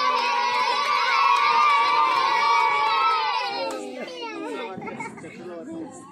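Group of children shouting and cheering together at a lit ground firework, many voices at once, loud for about three and a half seconds and then dying away to a few scattered voices.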